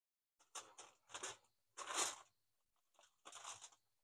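Heavy-duty aluminum foil crinkling in four short, quiet bursts as a smoked pork butt is set down and shifted on it.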